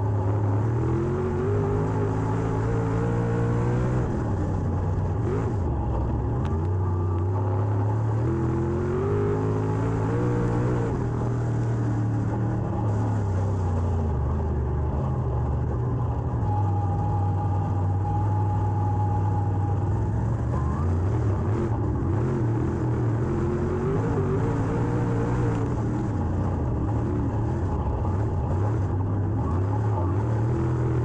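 Dirt late model race car's V8 engine heard from inside the cockpit, its revs climbing and dropping back in repeated swells as the throttle is worked, over a steady low drone.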